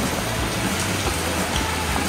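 Steady rain falling, an even hiss with no distinct drops standing out.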